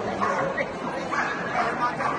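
A dog barking several times in short calls while running, over voices in the crowd.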